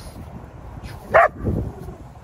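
A German shepherd gives one short, high-pitched bark about a second in.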